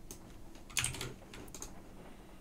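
A few quiet computer keyboard keystrokes: one at the start, a quick cluster just under a second in, and two more around a second and a half in, as a keyboard shortcut is pressed to paste text into a terminal editor.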